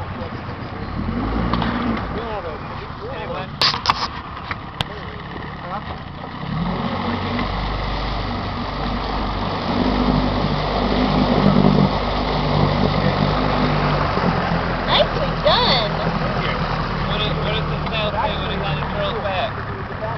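A boat's motor running steadily under way, louder from about six seconds in, with indistinct voices over it and a few sharp clicks about four seconds in.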